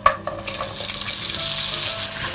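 Raw potato sticks dropped into hot cooking oil in a nonstick frying pan: a brief clatter as they land, then a steady sizzle as they start to fry.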